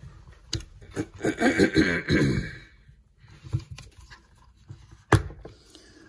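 Clicks and taps of a hinged clear plastic port cover being pried open on a rubber-armoured LED work light, with one sharp click about five seconds in. A brief vocal sound from the person handling it comes about one to two seconds in.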